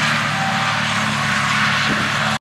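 Massey Ferguson tractor engine running steadily under load while its mower cuts grass, with a constant even noise.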